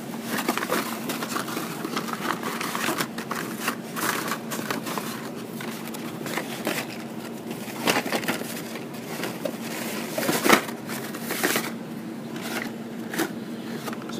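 Carded Hot Wheels die-cast cars being handled and flipped through in a cardboard shipper display: irregular plastic-blister and cardboard clicks, crinkles and knocks. A steady hum sits underneath.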